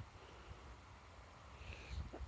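Quiet outdoor background with only a faint low rumble and no distinct sound.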